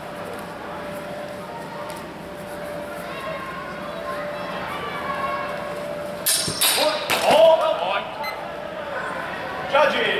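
Longswords clashing in a fencing exchange: a quick run of sharp clanks and knocks from about six to eight seconds in, with shouts among them, over a murmur of voices in a large hall. A short shout comes just before the end.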